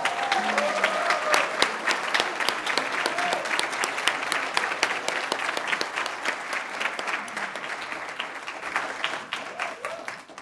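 Audience applauding a prize announcement, a dense run of hand claps with a few voices calling out in the first second or so, gradually thinning toward the end.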